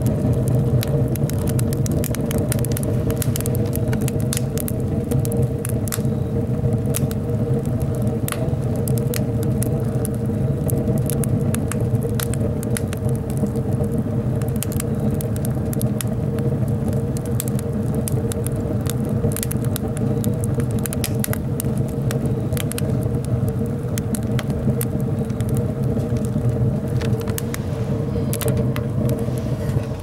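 Wood fire burning hard in the firebox of an Anevay Frontier Plus steel camping stove, stoked up hot: a steady low rumble of the draft with frequent sharp crackles and pops from the burning logs.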